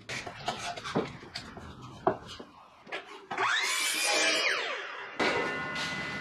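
A pine board is slid and knocked into place on a sliding compound miter saw for about three seconds. Then the saw runs up with a rising whine and cuts through the board for about two seconds, its pitch dropping near the end.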